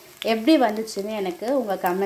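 Mutton cutlets shallow-frying in oil in a grill pan, sizzling under a woman's voice that starts a moment in and is the loudest sound.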